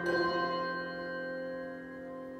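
Handbell choir striking a chord together, the bells then ringing on and slowly fading.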